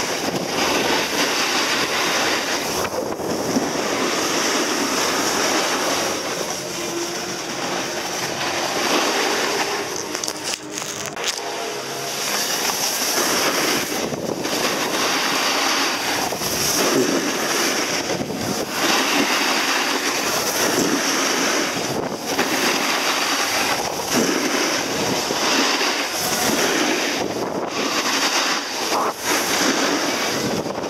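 Skis sliding and scraping over snow during a downhill run, mixed with wind rushing over the camera microphone. A steady noise that dips briefly every few seconds.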